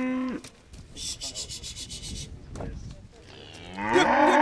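Cattle mooing: one low moo trails off just after the start, and a loud moo rises near the end. In between, about a second in, there is a brief rapid rasping sound lasting about a second.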